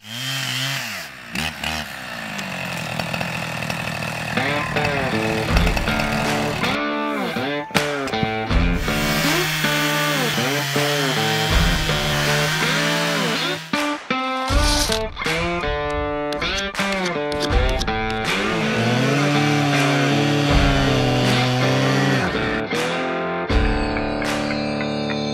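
Petrol chainsaw cutting through fallen logs, its engine revving up and down again and again as it bites into the wood and eases off. Background music plays with it.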